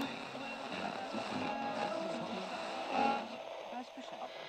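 Indistinct speaking voices over a dense, hissy background with some music, starting abruptly out of silence.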